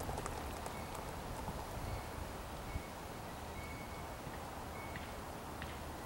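Lager beer pouring slowly from a glass bottle into a glass mug, a faint, steady trickle and fizz of foam, with wind rumbling on the microphone.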